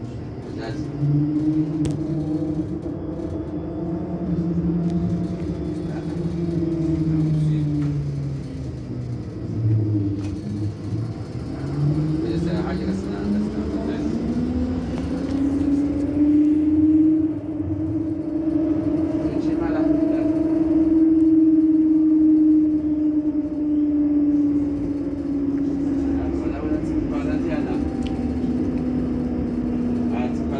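Bombardier Flexity Outlook tram's electric traction drive whining: the pitch sinks over the first ten seconds as the tram slows, then rises again as it picks up speed and holds steady, over a low running noise.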